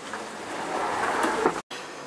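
A 65-quart Yeti cooler being pulled out on its slide: a steady sliding, rolling noise that grows louder for about a second and a half, then cuts off suddenly.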